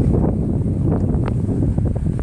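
Wind buffeting the camera's microphone, a loud low rumble, with a few faint clicks about a second in.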